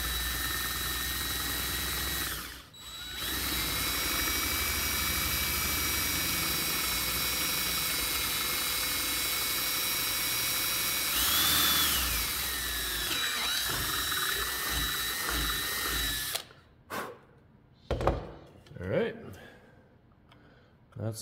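Cordless drill with a quarter-inch bit boring slowly through the wooden end of a pencil box. The motor runs steadily, drops out briefly about two and a half seconds in, then runs on with its whine rising and falling in pitch around the middle. It stops a few seconds before the end, followed by a few light knocks.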